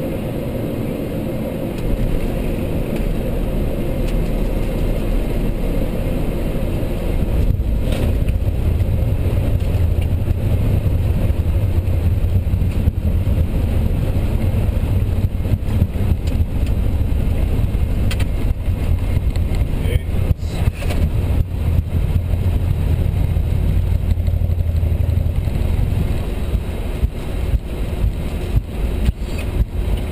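Airliner flight-deck noise through touchdown and landing rollout: the steady rush steps up about two seconds in as the wheels meet the runway, then a heavy low rumble builds from about seven seconds in as the aircraft decelerates. Irregular bumps and rattles come through near the end as it rolls along the runway.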